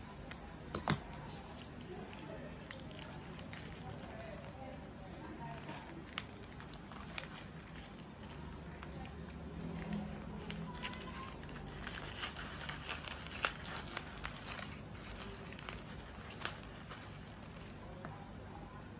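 Paper wrapping on a small bouquet crinkling and rustling as it is pressed and adjusted by hand, with a busier patch of crinkling in the second half. A few sharp scissor clicks near the start.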